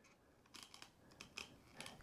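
Faint series of small plastic clicks from the fold-out phone cradle of a selfie robot ratcheting through its notched angle positions as it is tilted by hand.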